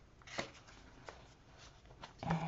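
A stack of cardstock journaling cards handled and slid against each other in the hands: one brief paper swish about half a second in, then a small tick, otherwise faint.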